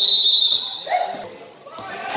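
A referee's whistle blown once, a single shrill, steady blast of about half a second, followed about a second in by a brief shout on the court.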